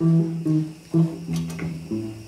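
Acoustic guitar picking a few single notes between songs, about one every half second, mostly the same pitch with a lower note near the end.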